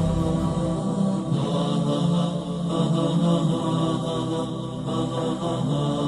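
Wordless vocal chanting, a nasheed-style intro bed of sustained, layered voices that change pitch slowly.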